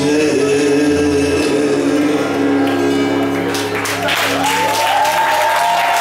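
A live band plays the sustained closing chords of a song, with guitar, keyboard and long held notes. About four seconds in, a note glides up and holds higher, while a noisy wash rises above the band.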